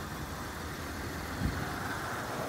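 Steady low rumble of background noise, with a short low thump about one and a half seconds in.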